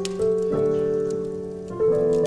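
Slow piano playing: held chords ringing, with new notes struck a few times, over the light crackle and pops of a burning wood fire.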